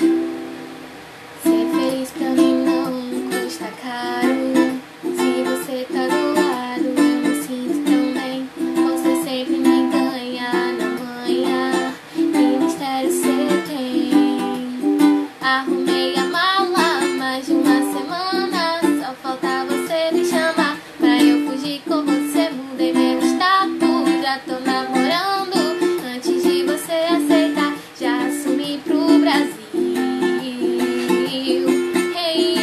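Ukulele strummed in a steady rhythm, with a woman singing along. A single strum rings at the start, and the rhythmic strumming begins about a second and a half in.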